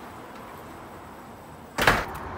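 A low, steady hum, then a single loud metal latch clunk near the end as a door or gate is worked.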